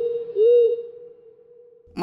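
Two hollow hooting notes like an owl's, each rising then falling in pitch, the second running into a held note that fades away over about a second.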